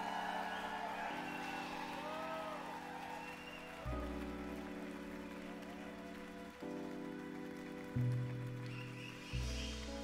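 Live band playing slow held keyboard chords that change every couple of seconds, with deep bass notes coming in about four seconds in and twice more near the end. Crowd cheering and whoops sit underneath.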